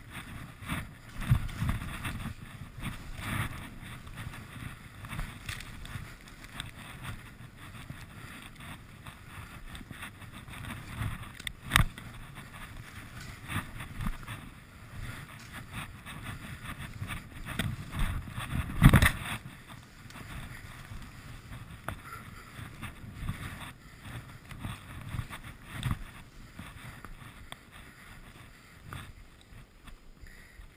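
Skis sliding and carving through soft, wet snow, an uneven rushing swish that swells with each turn, with wind buffeting the microphone. A sharp knock cuts in about twelve seconds in, and a heavier thump a little past the middle is the loudest moment.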